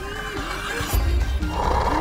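Cartoon soundtrack: music with wavering pitched sounds, then a deep low rumble that begins about a second in and gets louder.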